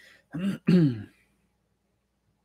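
A man clearing his throat in two short, gruff pushes that fall in pitch, about half a second in.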